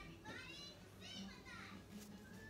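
Faint child's voice in the background: a couple of short, high-pitched calls that each rise and fall in pitch.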